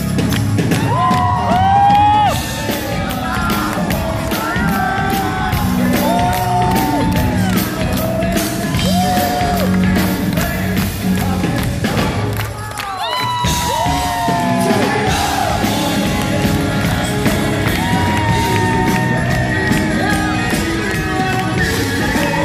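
A rock band playing live, with a male lead voice singing over guitars and drums; the music drops briefly about twelve seconds in, then comes back in full.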